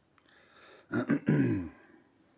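A man clears his throat once, about a second in, with a short vocal sound that falls in pitch.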